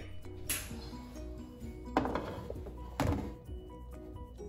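Quiet background music of short, soft notes, broken by three dull thunks: one about half a second in, one at two seconds and one near three seconds.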